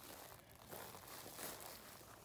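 Quiet outdoor background with faint rustling.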